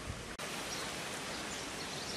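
Steady outdoor ambient hiss at the edge of a pond, broken by an abrupt cut about half a second in. Afterwards it carries on much the same, with a few faint high chirps.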